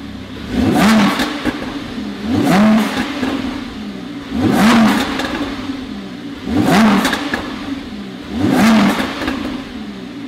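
A Lamborghini Huracán's naturally aspirated V10 on its stock exhaust is blipped five times while stationary, about every two seconds. Each rev climbs quickly and drops back to a steady idle.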